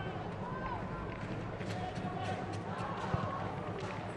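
Football stadium ambience: a steady murmur from a sparse crowd, with faint distant shouts from players on the pitch and a few soft knocks of the ball being kicked.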